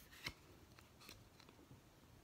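Near silence, with a few faint clicks and a slightly louder one just after the start: a cardboard board book being handled as its page is turned.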